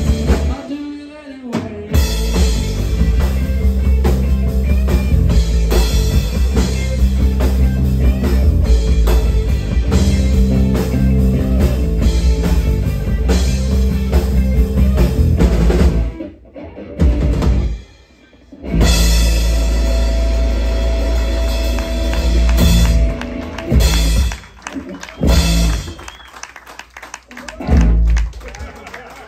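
Live rock band of electric guitar, electric bass and drum kit playing loudly. The music breaks off briefly about a second in and again partway through, then ends in a few short, separate full-band hits near the end.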